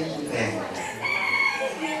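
A rooster crowing once, its call holding a high, steady note for about half a second.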